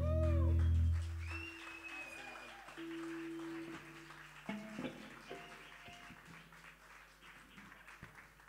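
A live band's loud sustained closing chord stops about a second in, followed by audience applause with a rising-and-falling whistle, dying away.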